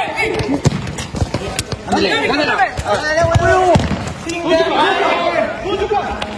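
Players shouting over a game of football on a concrete court, with sharp thuds of the ball being kicked and bouncing on the concrete throughout.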